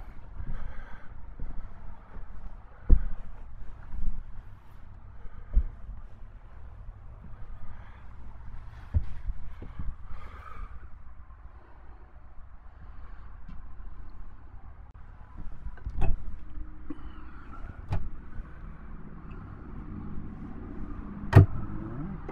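Steady low rumble of highway traffic heard from inside a parked motorhome, with scattered knocks and thumps from footsteps and handling, and a sharp click near the end as an overhead cabinet door is opened.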